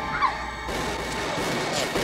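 Dramatic music and sound effects for a reenacted street shooting: a dense, steady wash of noise under held music tones, with a short rising cry about a quarter of a second in.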